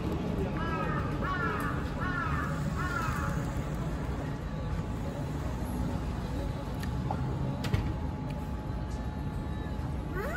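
A bird calling four times in quick succession, about three-quarters of a second apart, over the steady traffic noise of a busy city street.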